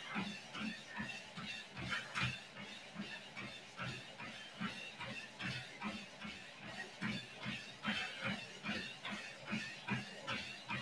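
Footfalls of a light jog on a compact folding treadmill's deck, about three steps a second, steady and faint.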